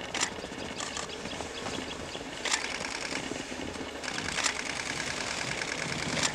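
Outdoor ambience of rhythmic high-pitched chirping or ticking, with four sharp clicks spaced about two seconds apart.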